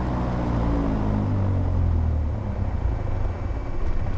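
Piper Warrior's four-cylinder Lycoming engine winding down as the throttle is pulled to idle after the run-up, its drone falling in pitch over about two and a half seconds. It settles into a low, rougher idle near 500 RPM and keeps running, which is the sign of a good idle check.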